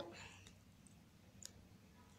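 Near silence: room tone, with one short faint click about one and a half seconds in.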